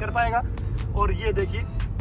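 Steady low road and engine rumble inside a moving car's cabin, with a man talking over it at the start and again about a second in.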